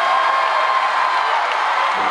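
Concert crowd cheering, with one high-pitched scream held as a long note that drops away near the end.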